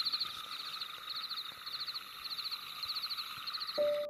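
Insects chirping in short, rapid high trills that repeat about twice a second, over a faint steady high hiss. A single held tone comes in just before the end.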